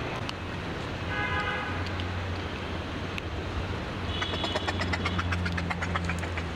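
A low, steady motor-like hum, with a short pitched tone about a second in and a rapid run of high ticks in the last two seconds.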